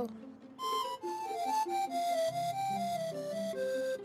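Pan flute playing a short solo: a run of held notes stepping down in pitch, with a soft lower accompaniment joining partway through.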